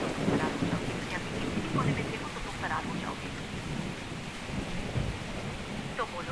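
Steady rain with low rumbling thunder, heaviest in the first two seconds.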